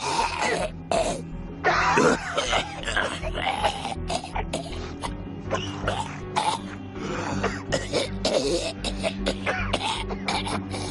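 A zombie making repeated raspy, cough-like throat noises over a low, steady film-score drone.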